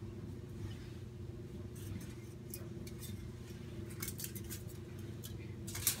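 Scissors snipping thin aluminum foil: a few scattered short snips and foil crackles, over a low steady hum.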